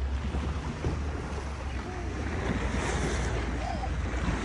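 Wind on the microphone and sea water rushing and lapping along a small boat's hull, over a low steady rumble from the boat's engine.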